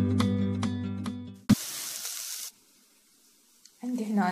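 Background music with plucked notes for the first second and a half, then about a second of sizzling from diced onions frying in oil in a pot, starting and stopping abruptly.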